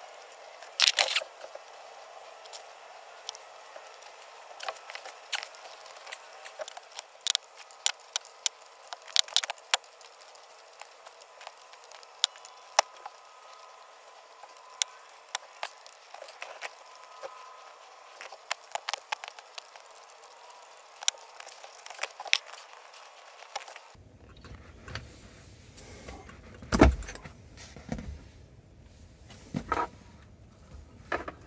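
Adjustable wrench clicking and clinking on the steel plate and 3/8 all-thread bolts of a homemade gearshift knob puller as the bolts are tightened in turn, jacking a pressed-on shift knob up its shaft. A single louder knock comes near the end.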